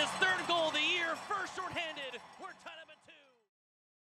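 A hockey play-by-play announcer's voice calling a goal, fading out over about three seconds and then stopping.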